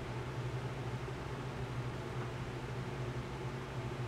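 Steady low hum under an even hiss: room background noise, with nothing else happening.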